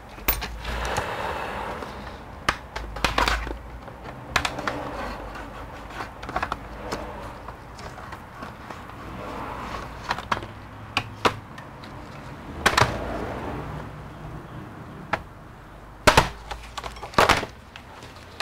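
Plastic bottom cover of an ASUS TUF Gaming A15 laptop being pried off with a pry tool: a series of irregular sharp clicks and snaps as the case clips let go, among handling rattles of the plastic. The loudest snaps come near the end.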